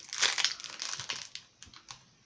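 Clear plastic wrapper around a block of black polymer clay crinkling as hands handle it. The crinkling is loudest in the first half second, then thins to scattered crackles that die away.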